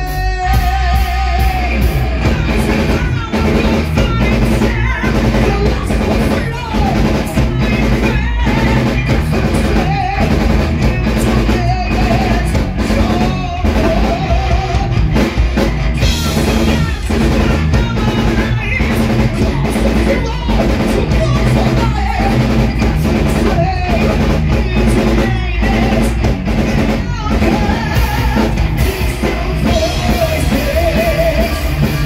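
Heavy metal band playing live: distorted electric guitars, bass and drum kit, with a male lead singer singing over them, loud and continuous.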